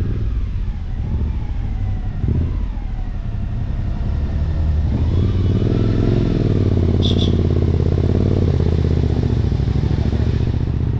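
Suzuki V-Strom motorcycle engine running in town traffic. The revs fall over the first few seconds, then rise again as it pulls away about halfway through, getting a little louder. A short high double beep sounds about seven seconds in.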